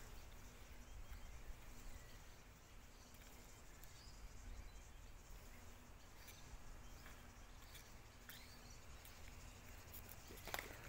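Near silence: faint outdoor background with a low rumble and a few faint high chirps.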